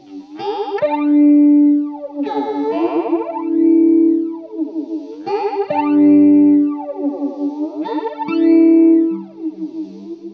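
Electric guitar, a Telecaster through a Fender Princeton amp, played through a Chicago Iron Tycobrahe Pedalflanger: four phrases, each rising into a held chord, with the flanger sweeping the tone up and down.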